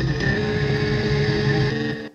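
Electronic intro theme music ending on a long held chord, which stops abruptly.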